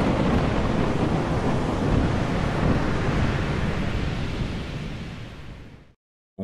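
Stormy-sea sound effect: a steady rush of heavy surf and wind that fades out over the last couple of seconds.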